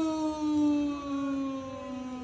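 A person's voice holding one long, drawn-out "oh" in a playful sing-song, its pitch sinking slightly as it goes.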